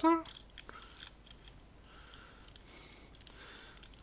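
Faint, scattered small clicks and rustles of wires and a plastic housing being handled by hand.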